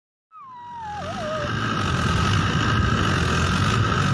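Farm tractor engine running hard with its wheels in deep mud, fading in and then holding steady. A short wavering, falling wail comes near the start.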